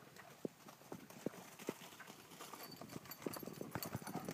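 Faint, irregular footfalls on soft muddy ground, a scattered tap every half second or so at first, growing quicker and louder toward the end.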